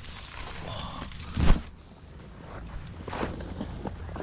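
Brush, leaves and grass rustling and scraping against a body-worn camera and backpack as a person crawls low under a fallen tree, with one loud thump about one and a half seconds in.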